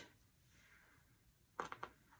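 Near silence: room tone, with a brief faint cluster of short sounds about a second and a half in.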